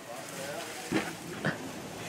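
Faint voices with two short bursts of laughter, about a second in and again half a second later.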